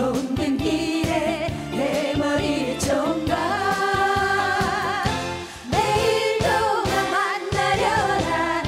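Women singing a Korean trot song with a live band, over a steady beat.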